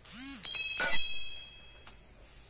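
An edited-in chime sound effect: a quick swooping tone, then a bright bell-like ding about half a second in that rings and fades over about a second.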